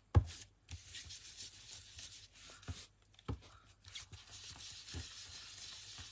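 Ink applicator rubbed and dabbed over card stock, filling colour into a stamped background: a soft scratchy rubbing with a few light taps.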